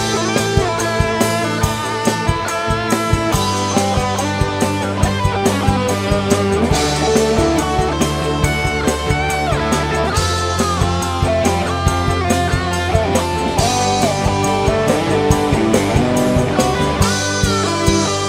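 Live dangdut band playing an instrumental break: an electric guitar lead with bent notes and vibrato over bass and drum kit, with a steady beat.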